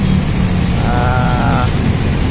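A bus's diesel engine idling with a steady low rumble. About a second in there is a brief wavering, high-pitched call.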